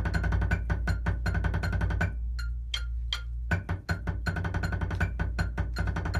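Drumsticks playing a roll on a rubber practice pad laid on a marching snare drum, in rapid even strokes. About two seconds in, the roll gives way to a few single strokes, then it comes back.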